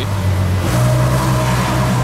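Ferrari FF's V12 engine running at low revs as the car creeps forward, its note stepping up slightly about two-thirds of a second in, under a steady hiss.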